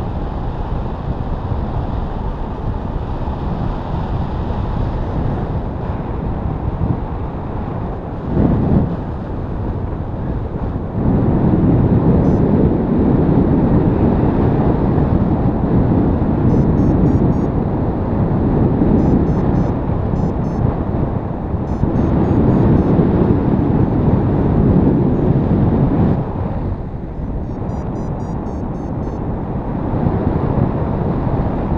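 Wind rushing over the microphone in flight under a paraglider: a steady, deep rushing noise that swells louder from about eleven seconds in until a few seconds before the end, with a brief surge at about eight seconds.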